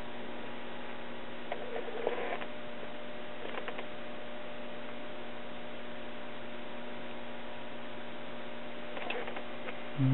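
Steady hum with a light hiss and a few faint ticks from the speaker of a circa 1947 GE five-tube AC/DC radio warming up. The hum sounds like a filter capacitor on its way out.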